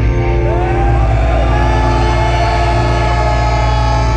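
A heavy rock band playing live and loud: distorted electric guitar and bass holding low, droning notes, with a guitar line above that bends and slides in pitch from about half a second in.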